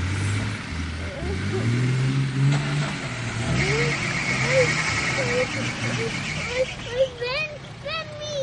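Off-road 4x4 SUV engine running under load as it climbs a rough dirt slope, revving up about a second or two in, with people's voices over it.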